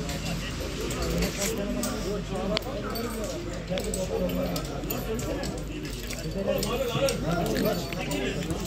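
Several players' voices calling and talking across an outdoor football pitch during play, overlapping and indistinct.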